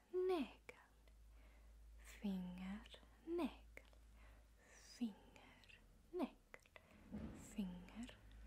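A woman speaking softly and whispering short words, a few separate utterances with pauses between them.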